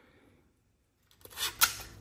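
Near silence, then a few light clicks and taps of card stock and a strip of tape being handled on a tabletop, the sharpest near the end.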